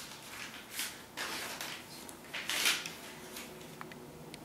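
Paper rustling in several short bursts as sheets or pages are handled, with a few light clicks near the end.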